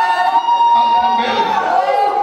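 One long, high cry held on a single note, dropping slightly in pitch a little past halfway, over a crowd of other voices echoing in a large hall.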